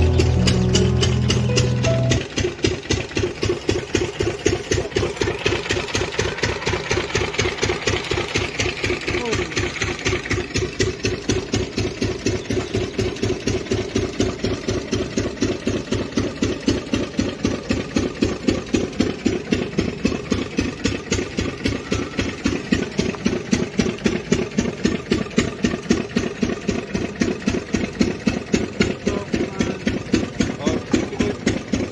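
An engine running steadily at a slow, even beat, about three to four knocks a second.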